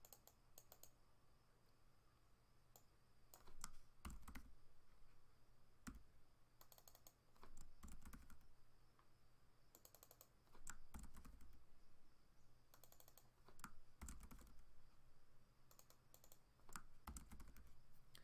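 Faint computer keyboard typing: short bursts of key clicks with pauses of a second or two between them, as spreadsheet cells are retyped.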